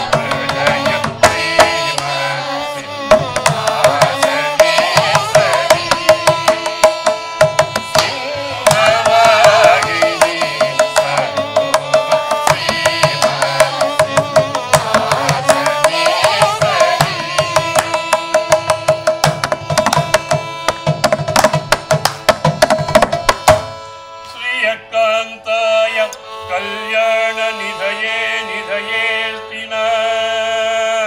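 Carnatic devotional song: a chorus of women singing, with rapid mridangam strokes and violin accompaniment. About 24 seconds in, the drumming and the loud chorus stop, and a softer held melodic line carries on.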